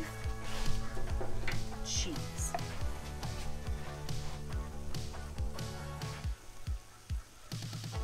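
Background music with a steady beat, easing off briefly about six seconds in.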